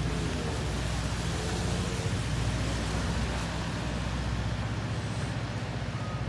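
City street ambience: a steady low rumble of traffic at an intersection.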